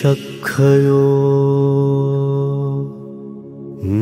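A voice chanting a Pali Buddhist blessing, drawing out one long steady note, with a new phrase starting near the end.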